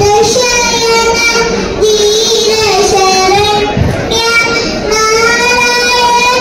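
A young girl singing into a handheld microphone, holding long notes that bend slowly in pitch, with a wavering note a little over two seconds in and short breaths between phrases.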